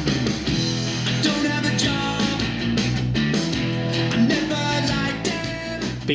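Guitar-based pop-rock song playing at a steady level from a JBL Authentics 500 wireless speaker in the room, with a full, big sound.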